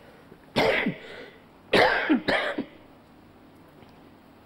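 An elderly man coughing: one cough about half a second in, then two more in quick succession about a second later.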